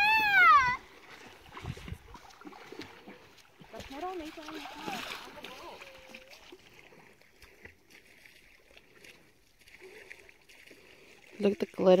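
Quiet lakeshore sound: faint, distant children's voices from swimmers out in the water, with light splashing. A loud woman's exclamation is cut off in the first second.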